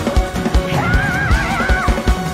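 Fast gospel praise-break music from a live church band, with drums pounding out a quick beat of about four or five hits a second. A high, wavering, warbling note rises in just under a second in and drops away near the end.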